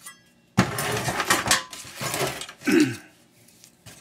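Clattering of the metal and plastic parts of a flat-screen computer monitor as it is handled and pulled apart. It comes as a dense burst of about a second, then a few shorter knocks.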